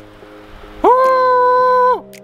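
Large spiral seashell blown as a horn: one loud held note about a second long, scooping up in pitch as it starts and dipping as it stops. Background music plays underneath.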